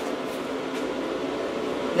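Steady background hum and hiss of room noise, with no distinct events.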